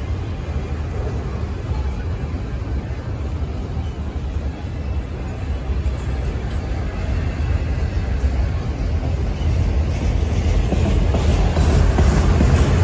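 Freight train of autorack cars rolling past close by: a steady rumble of steel wheels on the rails, growing louder near the end.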